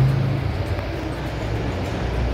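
An electric fan running fast, making a steady rushing noise with a low hum as its air blows across the phone's microphone.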